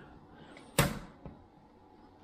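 One sharp click about a second in: a plastic clip-on connector being pressed into place on an aluminium LED light board.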